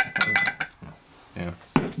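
Glass and metal barware clinking against a pint glass: a quick run of clinks with a brief ringing tone, then another sharp clink near the end.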